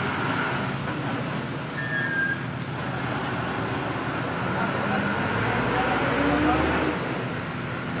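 Steady outdoor din of background voices and idling vehicle engines, with a low engine rumble swelling about five seconds in and fading near seven.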